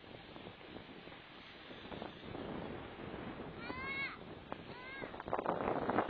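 Skis scraping and hissing over groomed snow, getting louder toward the end. Two short, high-pitched calls cut in just past the middle, a longer one followed by a shorter one.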